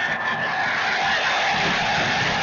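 Large stadium crowd roaring steadily during a college football kickoff return.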